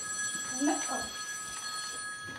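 A telephone ringing: one steady ring lasting about two seconds, with a quiet voice briefly underneath.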